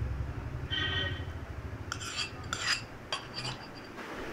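A spoon clinking and scraping against a tadka pan as cooled tempering is emptied out onto batter, with a few short ringing clinks in the second half.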